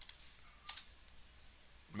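A few faint computer keyboard keystrokes, with one sharper click about 0.7 s in, as a stock ticker is typed into charting software.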